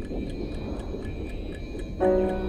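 Ambient electronic soundscape: a low rumbling drone under a steady, clock-like ticking of about four ticks a second, with faint high sustained tones.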